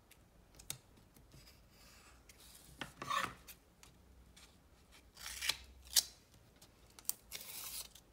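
Paper and double-sided tape being handled: three short rasping rubs of cardstock, about three, five and seven seconds in, with a few sharp light taps between them.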